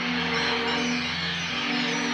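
Cartoon magic-spell sound effect: a steady shimmering hiss over held chords of background music. The chord shifts about halfway through.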